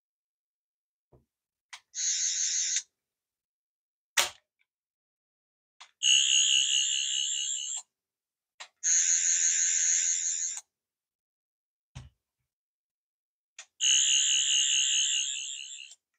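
Toy sonic screwdriver giving four bursts of its buzzing, warbling electronic sound effect, each set off by a click of its replacement button. A sharper click comes about four seconds in.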